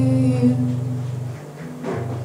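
A woman's voice holding one long sung note over a ringing acoustic guitar chord; the voice stops about two-thirds of the way through, and a fresh guitar strum rings out near the end.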